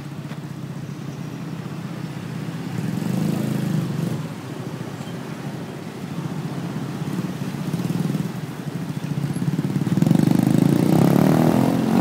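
Slow road traffic passing close by: small motorcycle engines, with a car at first. The engine noise swells twice and is loudest near the end as motorcycles pass right by.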